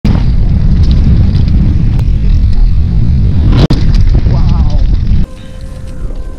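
Heavy wind buffeting and tyre rumble on a mountain bike's helmet camera during a fast descent of a dirt trail. It stops abruptly about five seconds in, giving way to much quieter outdoor sound.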